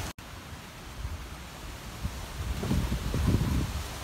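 Outdoor background noise: a steady hiss with low wind rumble on the microphone, the rumble growing stronger for about a second past the middle.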